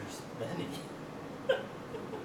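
A man's single short, sharp laugh-like vocal burst, like a hiccup, about one and a half seconds in, with faint voice sounds before it.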